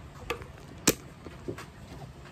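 Brown paper shopping bag being handled, with a few sharp crackles of the paper, the loudest about a second in.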